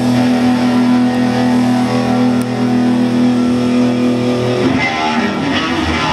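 Live rock band with distorted electric guitars holding one sustained chord that rings steadily, then the band comes back in with a rhythmic riff near the end.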